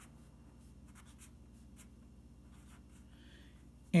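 Pen writing on a sheet of paper: faint, short strokes, several a second, with brief pauses between letters.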